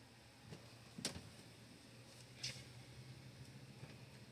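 Near silence: faint room tone with a low steady hum and a few soft clicks, the clearest about a second in.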